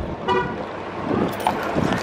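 Road traffic at a city intersection, with a short car-horn toot about a third of a second in.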